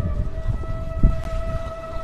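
A steady held tone with a few higher overtones, over low thumps and rustling from a silk saree being handled, with one sharper thump about a second in.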